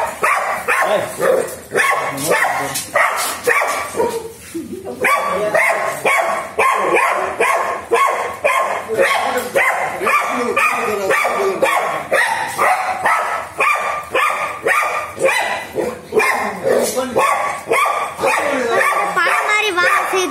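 A dog barking over and over, about two barks a second, with a short pause a few seconds in.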